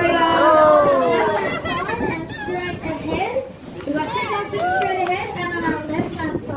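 Excited voices of several people, children among them, calling out and chattering over one another.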